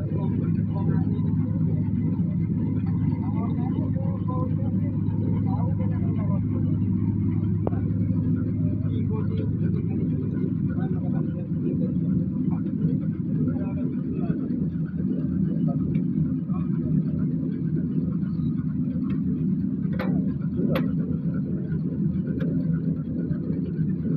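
Clay brick-making machine and a backhoe loader running together: a steady low engine and machinery hum. The lowest note eases about halfway through, and two sharp knocks come near the end.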